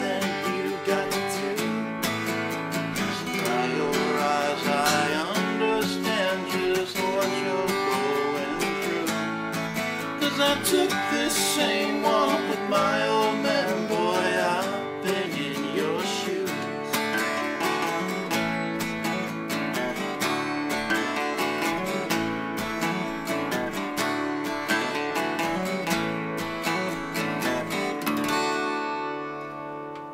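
Two acoustic guitars strummed and picked together, playing the closing instrumental of a country song. The sound fades near the end as the last chord rings out.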